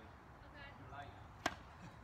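One sharp pop of a tennis ball struck by a racket, about a second and a half in.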